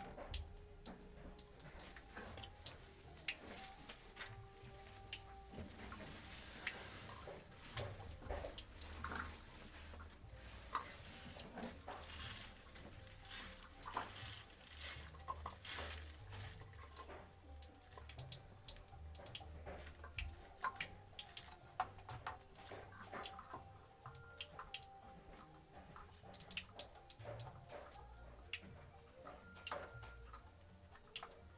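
Thin stream of water from a tap trickling and dripping into a small rock pond. Scattered clicks and knocks run throughout as hands work among the stones and set a small submersible aquarium pump in place.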